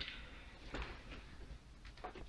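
Faint handling noise: a soft brushing knock about three quarters of a second in over low room tone.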